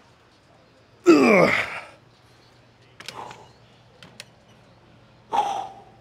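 A man's loud strained groan, falling in pitch, about a second in, from the effort of curling 70-pound dumbbells, followed by shorter breathy grunts. A few sharp clicks come from the dumbbells.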